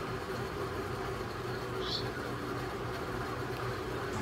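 Steady low hum and background noise, with no distinct sound event.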